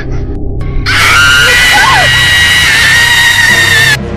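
A long, high-pitched scream starts about a second in, is held for about three seconds and then cuts off suddenly, over background music.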